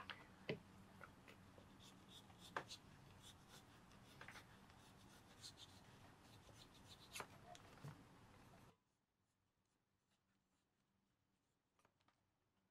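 A knife blade paring the edge of a leather piece against a metal bench top: soft scattered scrapes and small clicks over a faint hum, all cutting off suddenly to near silence about nine seconds in.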